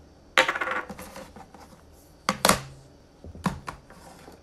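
Hard objects being handled close to the microphone: a short rattle, then two sharp clicks with a brief ring, then a few lighter clicks.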